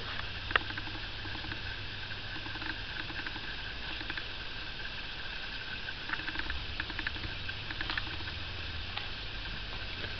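Steady low hum with scattered small clicks and rustles from a handheld camera being moved, with a sharper click about half a second in and a cluster of ticks later on.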